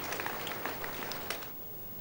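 Congregation applauding, a dense patter of many hands that dies away about one and a half seconds in.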